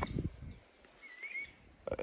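A short puff of breath at the start, then a single faint, wavering bird chirp about a second in.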